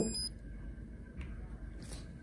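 A short high electronic beep at the very start from a Teijin Exogen ultrasound bone-healing unit as its power button is held down. Then faint low room noise with a soft brief rustle near the end.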